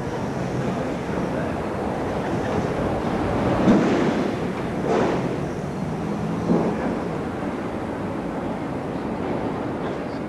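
Railway station ambience: a steady rushing noise with a faint low hum, with brief louder swells about four, five and six and a half seconds in.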